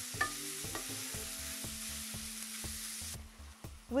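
Bacon cubes and sliced onions sizzling in butter in a frying pan while being stirred with a wooden spoon, with a few light knocks of the spoon against the pan. The sizzle cuts off suddenly about three seconds in.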